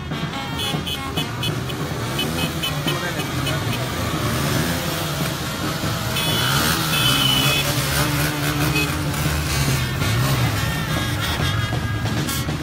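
Many motorcycle engines running together as a group rides along, with music playing underneath.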